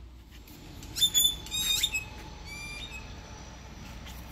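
Birds calling: two sharp, high calls about a second in, followed by a quick run of short chirps near the three-second mark.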